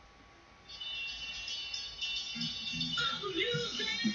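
Faint music and voices from a television playing in the room, starting about a second in.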